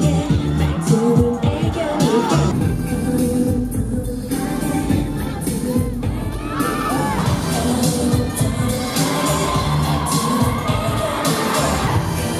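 Live pop music played loud through a concert sound system, with a woman singing into a microphone and a crowd cheering. The music cuts abruptly to a different song a couple of times.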